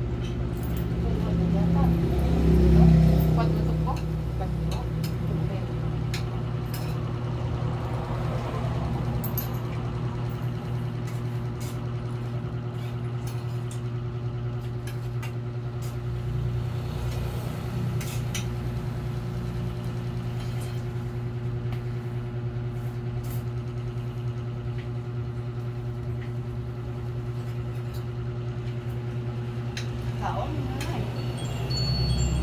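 Steady low mechanical hum with several fixed tones, like a motor running, swelling into a louder rumble about two to three seconds in. Scattered light clinks of spoons on plates are heard over it.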